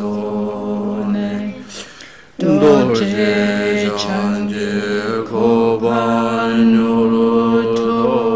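Voices chanting a Buddhist mantra in a steady, sustained drone on one held pitch. The chant breaks briefly for breath about two seconds in, then carries on.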